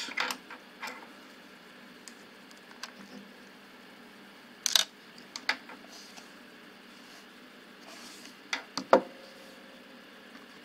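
Sparse small mechanical clicks and taps from a Pentacon-built SLR 1 camera body being handled with its lens off. The loudest click comes about five seconds in, and a short cluster of clicks comes near the end.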